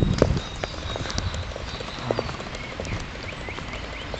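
Footsteps of a person walking along a paved park path, a scatter of irregular knocks, with a few short high bird chirps near the end.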